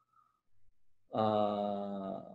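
A man's voice holding one long, steady vowel, a drawn-out hesitation 'uhh', starting about a second in and lasting over a second. Before it there is near silence.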